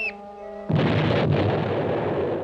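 Cartoon crash effect: held music notes, then about two thirds of a second in, a sudden loud, noisy crash of a load of bowling balls tumbling down onto the floor, rumbling on for more than a second.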